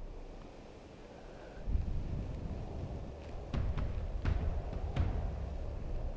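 Wind rumbling on an outdoor microphone in uneven gusts, coming in about two seconds in, with a few faint clicks in the second half.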